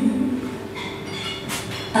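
Quiet live accompaniment to a musical-theatre song, holding between sung phrases, as a singer's held note fades out at the start; a brief hiss comes just before singing resumes at the end.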